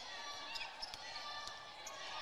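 Faint sound of a basketball being dribbled on a hardwood court, over a steady gym background.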